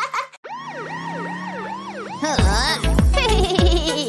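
A cartoon siren sound effect wailing rapidly up and down, about three sweeps a second, then an upbeat children's song with a heavy beat starts about halfway through.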